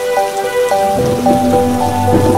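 Steady rain sound under background music: a simple melody of short notes stepping up and down, joined about a second in by a lower held tone.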